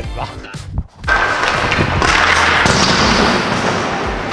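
Background music with a short spoken word at the start. About a second in, a loud, dense rushing noise sets in and carries on over the music.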